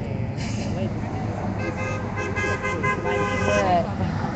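A vehicle horn honking from a passing car, held for about two seconds starting about one and a half seconds in, over street traffic and distant voices.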